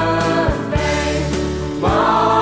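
A school song sung by students' voices over instrumental backing, with a steady bass and percussion strikes about halfway through.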